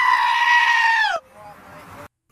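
A goat bleating: one long call held on a steady pitch, which falls as it stops a little after a second in.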